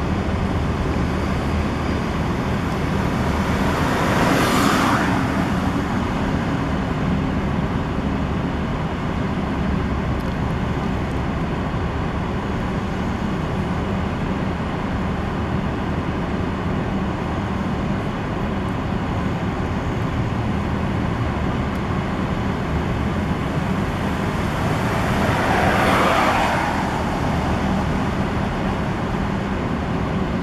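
Steady street traffic with a low rumble, and two vehicles passing by, one about four seconds in and another near the end.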